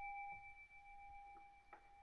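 Japanese Buddhist altar bell (rin) struck once with its striker, ringing with a clear two-tone note that slowly fades; a light knock near the end.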